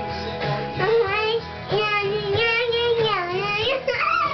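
A young boy singing along with held, wavering notes over recorded band music with a steady bass line underneath.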